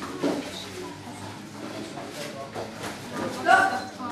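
Voices talking in a large gym hall, with a brief loud high-pitched sound about three and a half seconds in.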